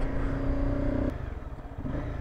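Honda CBR250R motorcycle engine running as the bike is ridden, heard from the helmet. Its note holds steady for about the first second, then drops to a lower, quieter rumble.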